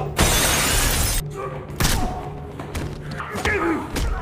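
Glass door shattering: a burst of breaking glass lasting about a second near the start, followed by a sharp thud about two seconds in.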